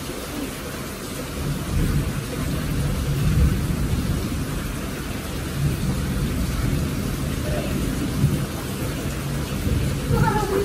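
Rain falling steadily, with a low rumble that swells and fades throughout.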